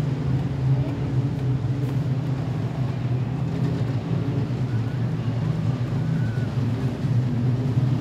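Modified sedan race cars' engines running around a dirt speedway oval, a steady low drone of several cars together, at reduced pace under the yellow caution lights.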